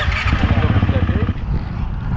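Enduro motorcycle engine running steadily, with an even, rapid low pulsing.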